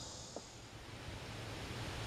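Faint outdoor background noise with a steady hiss; a high steady band of sound fades away in the first half second or so.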